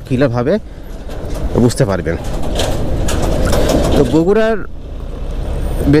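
Motorcycle engine running steadily at low speed under the rider, with a rush of wind and road noise that swells in the middle and drops away about four seconds in.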